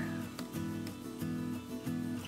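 Background music with plucked acoustic guitar, held notes changing about every half second.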